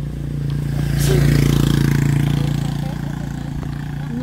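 A motorcycle engine passing close by and riding away, its steady note swelling to its loudest about a second in and then slowly fading.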